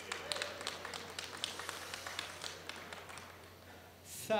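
Scattered hand clapping from a small audience, uneven claps that thin out and fade toward the end.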